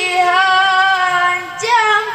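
A boy reciting the Quran in melodic tilawah style into a microphone, holding one long steady note. About one and a half seconds in he breaks off briefly and starts the next phrase with a rise in pitch.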